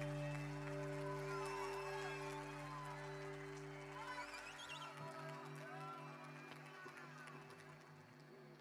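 A live band's closing chord held and slowly fading away, its lowest notes dropping out about halfway through, with voices calling out from the audience over it.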